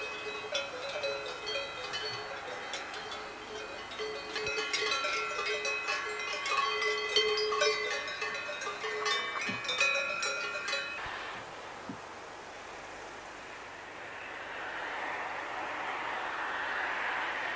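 Bells of grazing cows clanking irregularly, many strikes at several different pitches, stopping about eleven seconds in. A soft rushing noise rises near the end.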